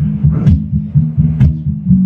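Guitar playing a low, repeating picked pattern, with two sharper string strikes about half a second and a second and a half in.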